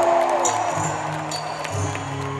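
Soft live music through an arena PA: a few notes held steadily, with crowd noise underneath.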